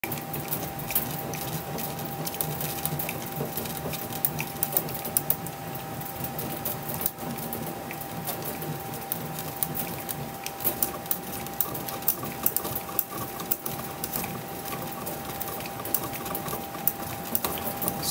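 Motor-driven bat-rolling machine running, its rollers spinning a baseball bat under pressure to break it in. The sound is a steady hum with a thin held whine and scattered sharp clicks.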